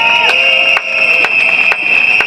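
Demonstrating crowd answering a rally slogan with noisemakers: one long, steady, high whistle blast over short horn-like tones and irregular sharp clacking.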